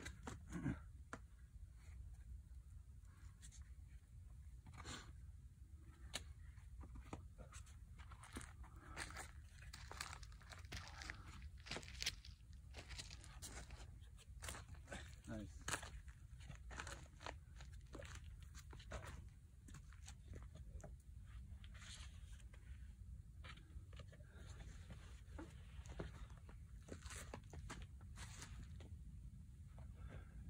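Scattered faint scuffs, taps and scrapes of hands and climbing shoes on sandstone as a climber moves up a boulder problem, over a low steady background rumble.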